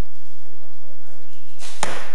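A single sharp arrow smack near the end, from archery practice shooting, with a short echo in the hall afterwards.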